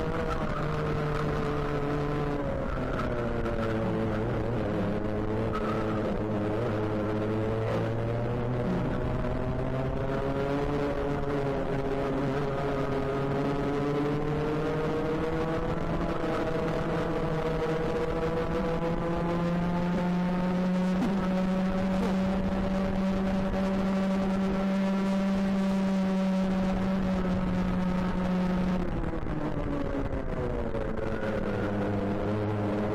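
Racing kart engine heard from on board, running continuously: its pitch drops a couple of seconds in as it slows, climbs gradually through the middle, holds high for several seconds, then drops again near the end.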